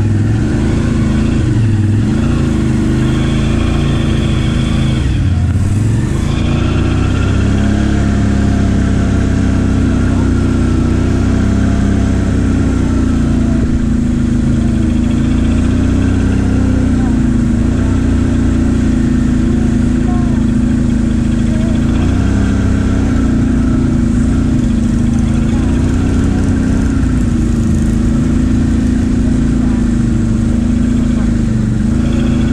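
ATV engine running under way, its pitch rising and falling with the throttle, with a brief easing off about five seconds in.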